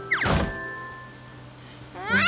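Cartoon sound effect in the first half-second: a quick falling glide together with a thump, then soft background music with held notes.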